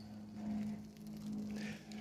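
Faint sizzling of burgers cooking on a grill, swelling slightly twice, with a steady low hum underneath.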